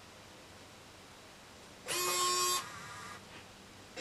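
ALTAIR EZ:1 robot's arm servo motors whirring as the arm lifts: a steady whine about two seconds in, lasting under a second, then a quieter whir that stops about half a second later.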